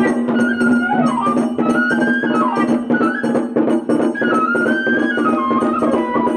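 Japanese festival hayashi music: a bamboo flute playing an ornamented melody with slides, over continual percussion and a steady low tone.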